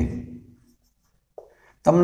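Marker pen writing on a whiteboard, heard as one faint short stroke about a second and a half in. At the start a man's drawn-out voice trails off, and speech starts again just at the end.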